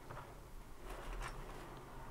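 Faint clicks and taps of small plastic miniature parts being picked up and handled, a few of them close together about a second in, over a low steady room hum.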